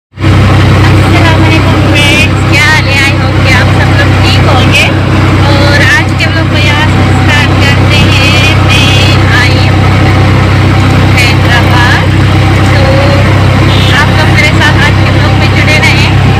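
Loud, steady rumble of a moving vehicle heard from inside the cabin, with voices over it.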